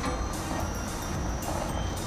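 Coconut milk boiling in an aluminium saucepan on a gas burner, a steady hiss of bubbling as the water boils off to leave the coconut oil.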